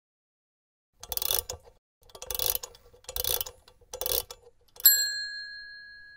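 Outro sound logo: four short, noisy, mechanical-sounding bursts about a second apart, then a single bright bell-like ding that rings out slowly.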